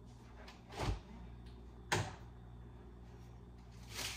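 Refrigerator door being pulled open: a dull thump about a second in, then a sharp click a second later.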